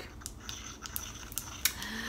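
Light scattered clicks and taps as a plastic jar of balm and its applicator are handled, with a faint hummed "mm" near the end.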